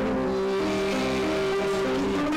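Bouzouki playing an instrumental phrase of held notes that step from pitch to pitch, with no singing over it.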